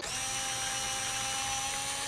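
Steady electronic whirring hiss with a few held tones, starting suddenly: a TV-static style transition sound effect.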